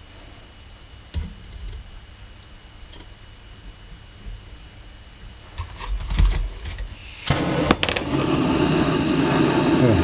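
Handheld propane gas torch lighting about seven seconds in, then burning with a steady, loud hiss of flame. Before it lights, a few light knocks from handling on the bench.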